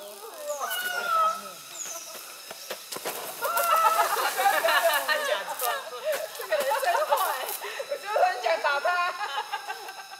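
Background chatter: several people's voices talking and calling out, overlapping and fainter than close speech, busiest in the middle of the stretch.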